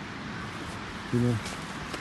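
A man's voice says a single short word about a second in, over a steady background hiss.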